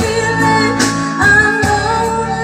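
A woman singing a pop ballad along to a karaoke backing track with guitar, played through a home stereo; the sung notes are held and slide between pitches.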